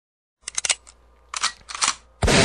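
Three short clusters of sharp clicks and rustling noise, about half a second apart at first and then closer together, after a brief silence at the start.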